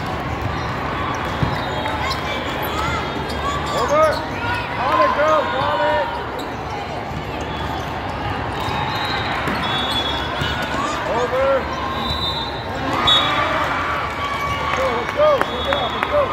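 Volleyball being played in a large, echoing sports hall: a steady hubbub of many voices, with short squeaks of sneakers on the court and a few louder ball contacts or shouts about four to five seconds in and again near the end.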